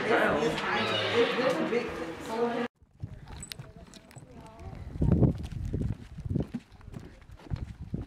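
Several people talking at once in a room; after a sudden cut, wind gusting on the microphone in uneven low surges, with footsteps on a wooden boardwalk.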